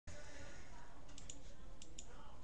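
A handful of light, sharp clicks in the second half, over steady background hiss.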